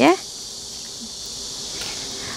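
A steady, high-pitched chorus of insects, the kind crickets make.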